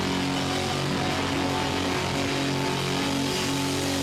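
A hardcore punk band playing live: distorted electric guitar and bass hold ringing low notes, changing pitch a few times, with little or no drum beat under them.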